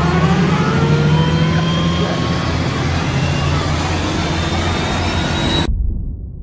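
Road vehicle engines running loud, heard from inside a car, with pitches that slowly rise as the traffic builds. The sound cuts off suddenly near the end.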